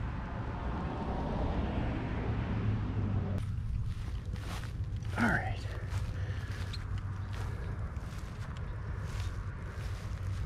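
Footsteps on grass at a walking pace, about two a second, over a steady low hum, with one brief falling call about five seconds in.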